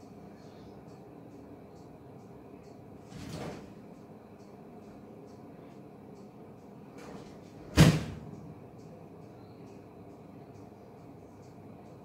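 Quiet kitchen room tone with a steady low hum, a soft brushing noise about three seconds in, and one sharp knock about two-thirds of the way in, the loudest sound, while a metal spoon spreads chocolate icing over a cake.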